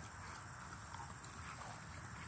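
A young Rottweiler gnawing on a small object, with faint scattered clicks, over a steady low rumble on the microphone.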